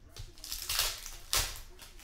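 Cardboard trading cards being handled and slid against each other on a table: a short papery rustle about half a second in, then a sharper, louder one about a second and a half in.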